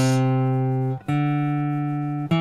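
Acoustic guitar playing single picked notes of the C major scale: C on the third fret of the fifth string, then about a second later the open fourth string's D, a step higher, each left to ring.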